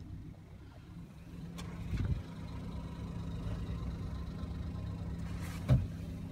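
2014 Ford Escape SE's engine idling with a steady low hum, heard from inside the cabin. There is a dull thump about two seconds in and a sharper one near the end.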